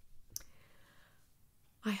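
A single short, sharp click about a third of a second in, over quiet room tone; a woman's voice starts just before the end.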